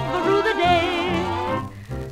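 Old novelty Hawaiian song recording playing: a melody line with a wavering vibrato over bass and rhythm accompaniment, thinning out near the end.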